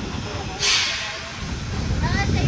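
Steam locomotive 213.901 giving off a loud burst of hissing steam, starting about half a second in and lasting about half a second.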